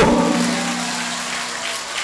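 Large crowd applauding, dense clapping that fades slowly over the two seconds, with a low steady hum beneath.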